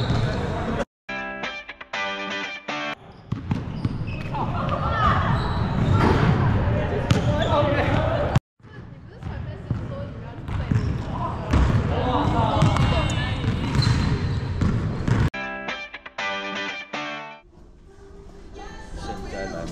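Basketball bouncing on a hardwood gym floor, with voices echoing in the large hall, in two stretches split by sudden cuts to silence. Short bits of music come in near the start and again near the end.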